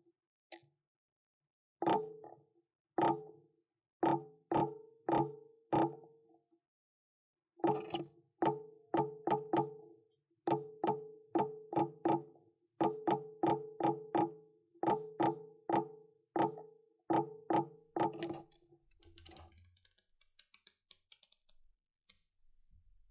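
Metal leather stamping tool struck repeatedly with a rawhide mallet, stamping cased leather laid on a granite block: about thirty sharp, briefly ringing taps at roughly two a second, with a short pause a few seconds in. The taps stop near the end, leaving only faint noise.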